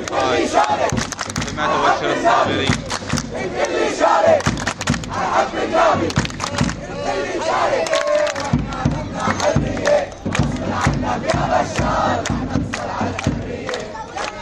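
A large crowd of protesters shouting and chanting slogans together, loud throughout, with many short sharp sounds through it.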